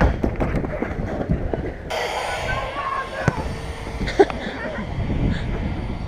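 Open-air din of a bubble football game: faint distant shouts and scattered knocks, with one sharp knock a little after three seconds in.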